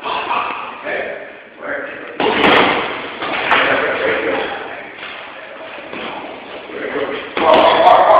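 Punches landing on a hanging heavy bag: a few hard thuds, the loudest coming about two seconds in and again near the end.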